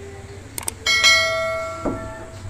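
YouTube subscribe-button sound effect: two quick clicks, then a bright notification-bell ding that rings on and fades away.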